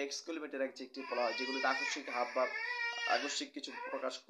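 A baby crying in one long, wavering, high-pitched wail for about two seconds, starting about a second in, over a man's speech.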